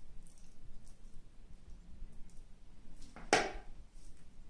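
Faint scraping of a spoon spreading curd-cheese filling over a thin pancake, then a short clatter about three seconds in as the metal spoon is put back into the plastic bowl of filling.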